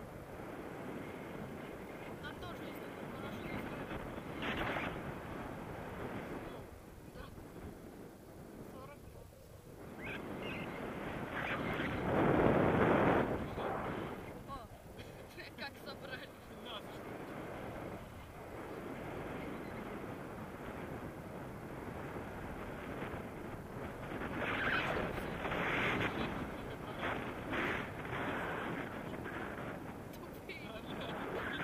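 Wind rushing and buffeting over an action camera's microphone in flight on a tandem paraglider, rising and falling, with one loud gust about twelve seconds in.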